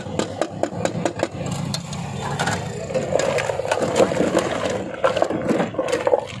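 Steel strainer and pot clattering and scraping, with the wet squelch and slosh of falsa berry pulp and juice being strained.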